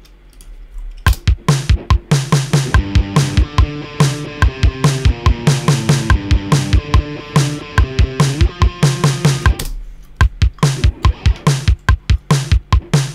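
A programmed kick-and-snare drum beat at a steady rock tempo plays back with a recorded electric guitar part over it, starting about a second in. Near the end the guitar drops away and the drum beat carries on alone.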